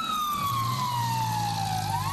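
Emergency vehicle siren in a slow wail: one long falling tone that turns and starts to rise again near the end, over a low steady hum.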